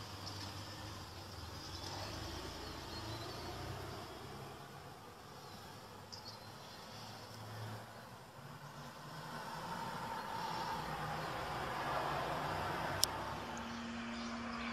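Outdoor background noise: a steady low hum and hiss that grows a little louder in the second half, with a single sharp click near the end.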